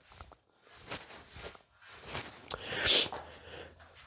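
Shoes shuffling and scuffing on a wooden floor as a boxer shifts and pivots his stance, with a louder hissing scrape about three seconds in.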